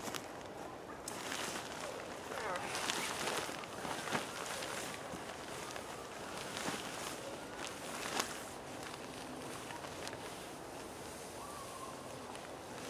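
Tarp fabric rustling and crinkling as it is pushed up from underneath on a pole, mixed with shuffling on dry leaf litter and a few sharp ticks.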